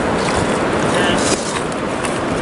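Fast-flowing river current rushing steadily over a rocky bed.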